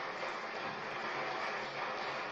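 Steady rushing noise without words, fading slowly.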